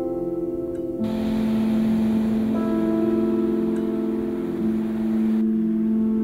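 Ambient background music of long, held ringing tones like bells or a singing bowl over a low sustained note. A steady hiss joins about a second in and drops away near the end.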